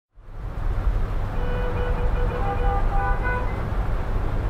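City traffic rumble, fading in from silence over the first half-second and then running steadily. A few short high tones sound over it between about one and three and a half seconds in.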